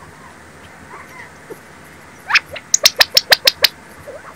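Wild birds calling at a feeding stump: a few soft, short calls, then a loud rising note about two seconds in followed by a quick run of about eight sharp chips, roughly eight a second.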